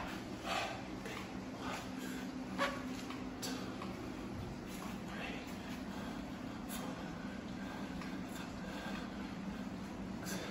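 A man's faint exertion breaths as he lifts dumbbells, a few soft exhales in the first few seconds, over a steady low hum.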